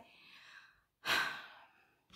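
A person's short audible breath, a sigh, about a second in, between phrases of speech.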